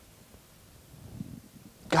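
Quiet room tone with a few faint, soft low sounds, then a man's voice starting right at the end.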